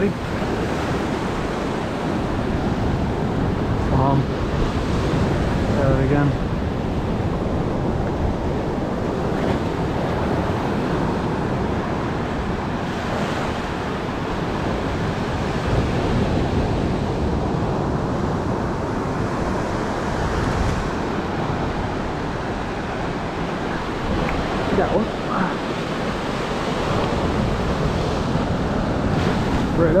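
Ocean surf: waves breaking offshore and washing up the sand in a steady, continuous rush.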